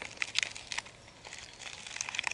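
A paper-and-foil coffee sachet crinkling in the hands as it is handled and tipped over a metal mug: a string of short crackles, most in the first second.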